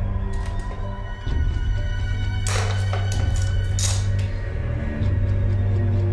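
Tense background score: a sustained low drone and held tones, with two brief bright shimmering hits about two and a half and four seconds in.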